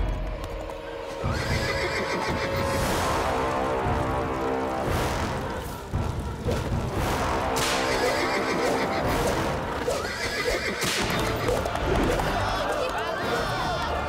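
Horse galloping with hoofbeats and whinnying, as cartoon sound effects over dramatic background music.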